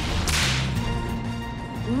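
A sharp whoosh sound effect about a quarter of a second in, over steady background music with held notes and a low bass.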